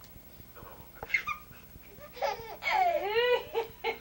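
A toddler laughing and squealing: a high, rising-and-falling squeal starting about two seconds in, then a quick run of short laughs near the end.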